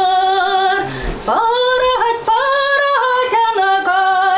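A woman singing a folk song in long held notes, with a short break for breath about a second in.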